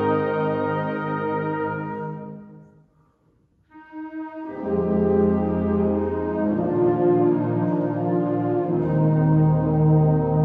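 Student symphonic wind band playing a slow piece in held chords. About two seconds in, the sound fades away to a brief silence, then a soft entrance leads the full band back in with sustained chords.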